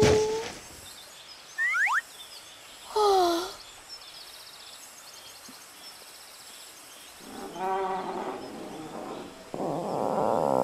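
Cartoon sound effects: a few short sliding tones, mostly falling, in the first few seconds. Near the end come animated dinosaur growls, the last one loudest, over a faint outdoor ambience.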